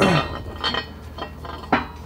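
Metal parts clinking and knocking about three times as the differential housing and its just-pressed-out pinion are handled in a hydraulic shop press.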